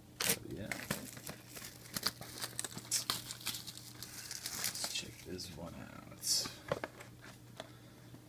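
Crinkling and tearing of plastic shrink-wrap being pulled off a sealed trading-card box, in irregular crackles with a louder rip about six seconds in.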